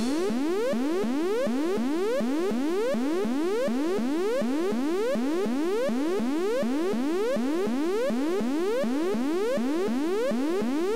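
Electronic background music: a synthesizer repeating a short rising sweep about three times a second, at a steady level and without a drum beat.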